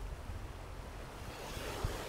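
Sea waves breaking and washing over rocks, the surf swelling louder about one and a half seconds in, with gusty wind rumbling on the microphone.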